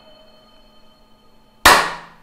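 A single sharp hand clap about one and a half seconds in, sudden and loud, dying away quickly. Before it, a few faint held musical tones linger and fade.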